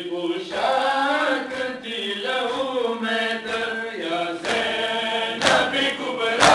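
Male voices chanting a Muharram mourning lament (nauha) in a steady, sung rhythm. A sharp slap sounds near the end as the hand-raised chest-beating (matam) begins.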